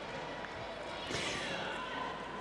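Indoor handball arena ambience: a steady background of crowd noise and voices, with a handball being bounced on the court.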